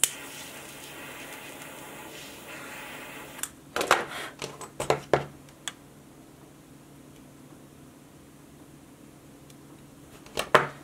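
A lighter clicks on and its flame hisses steadily for about three and a half seconds, melting the frayed end of a paracord strand. A few light taps and clicks follow as the melted end is pressed flat with a knife blade.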